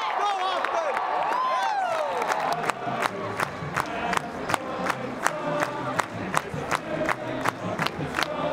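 Football stadium crowd yelling and cheering. About two and a half seconds in, a steady rhythmic beat of sharp strikes, close to three a second, starts under the crowd noise.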